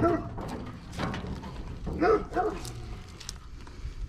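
A dog barking in short yelps, once at the start and twice about two seconds in, with a few sharp clunks of the car's hood being raised in between.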